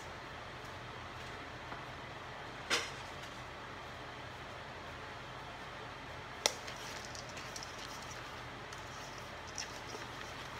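Steady low room hum in a kitchen, broken twice by a short sharp knock, about three seconds in and again about six and a half seconds in.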